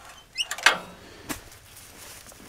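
A short rising squeak, then two light clicks: handling noise on the sawmill's metal parts.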